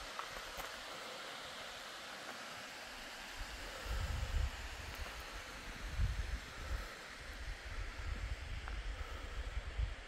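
Steady rush of falling water from waterfalls cascading down the cliffs. About four seconds in, gusts of wind start buffeting the microphone in uneven low bursts.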